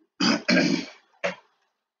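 A man clearing his throat, in two rasps close together and a brief third catch just after a second in.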